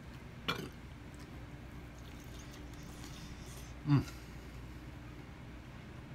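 A steady low hum in a small room, a soft click just after the start, and about four seconds in one short, low vocal sound from the man eating, falling slightly in pitch.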